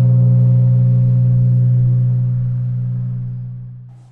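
A deep gong-like tone from the intro title sting, ringing steadily and fading away near the end.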